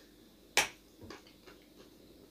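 A bite into a small, dry, hard lump of edible clay: one sharp crunching crack about half a second in, then a few faint crunches as it is chewed.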